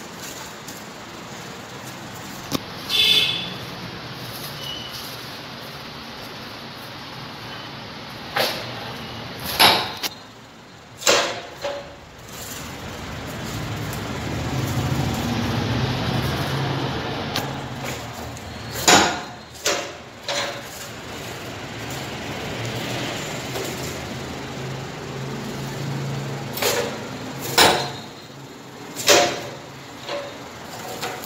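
Leg-press paper plate making machine being worked: sharp metal clanks from the press and its linkage at irregular intervals, some in close pairs, over a steady low hum through the middle.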